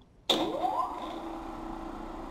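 Three-phase electric motor switched on about a quarter second in: a sudden start, then a whine rising in pitch as it spins up, settling into a steady running hum.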